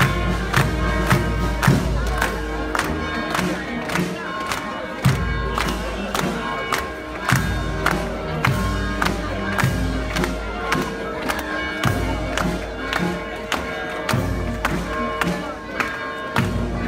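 Band music with sustained horn-like tones over a steady, even drum beat, with crowd noise mixed in.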